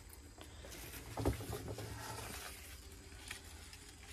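Faint rustling of leaves and small handling noises as a potted houseplant is moved, with a brief soft knock about a second in.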